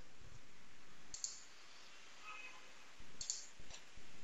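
A few computer mouse clicks over faint microphone hiss: one about a second in and a quick pair near three seconds.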